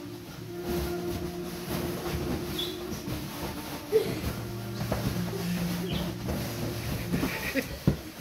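A dog trampling and pawing at a fabric bean bag, the cover and its filling rustling and shifting under its feet, with a couple of sharp knocks. Background music with long held notes plays underneath.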